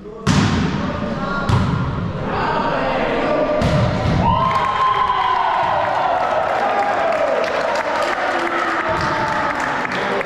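A volleyball struck three times in a rally, three sharp hits in a large gym hall. About four seconds in, loud shouting and cheering from players and spectators take over, as when a point is won.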